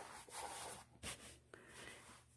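Faint rustling and rubbing of a padded fabric knife case being handled as its lid is folded back, with one light click about a second in.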